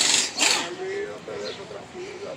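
Air tool at a tyre repair shop, heard in two short rattling bursts in the first half-second, followed by a person's voice.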